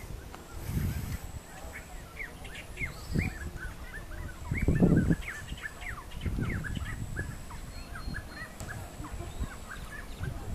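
A flock of birds calling, with many short overlapping chirps packed together from about two seconds in. Low rumbles come and go underneath, the loudest about halfway through.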